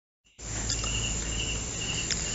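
A cricket chirping steadily in a high, pulsing trill over a low hum and hiss of background room noise, starting about half a second in after a moment of silence.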